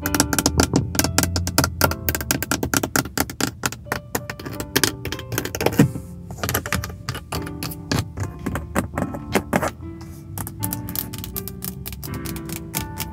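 Rapid fingernail tapping on the hard plastic of a Hyundai's interior door trim: the grab handle, armrest and window-switch panel. It runs as a dense stream of quick clicks over soft background spa music.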